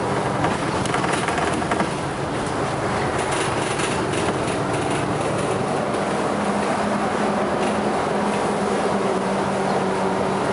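Sunwin city bus under way, heard from inside the cabin: steady running noise from the engine and tyres on the road, with a low engine hum that grows clearer in the second half.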